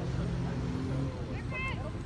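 Vehicle engine running with a low steady hum, with a brief high-pitched call about one and a half seconds in.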